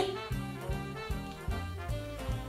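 Background music: a jazzy, swing-style tune with a steady, evenly repeating bass beat.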